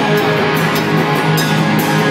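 Hardcore punk band playing live at full volume: distorted electric guitar, bass and drum kit with regular cymbal crashes, heard through a phone's microphone close to the stage.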